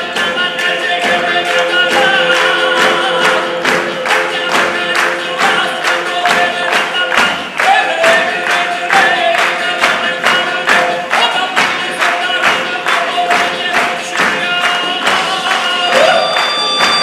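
Southern Italian folk music played live: several voices singing together over frame drums (tamburelli) beating a fast, steady rhythm.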